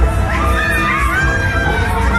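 Fairground ride riders shrieking and whooping as the ride moves, over loud fairground music with a heavy bass.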